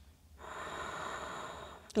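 A person breathing audibly through the nose or mouth: one soft breath lasting about a second and a half, starting shortly after the start.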